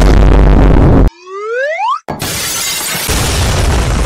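Cartoon sound effects of an HDMI being smashed: a very loud, harsh crashing burst lasting about a second, then a rising whistle-like tone, then a second long, loud crashing noise.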